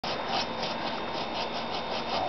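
Bow saw cutting through a small pecan trunk, with quick, even rasping strokes about five a second.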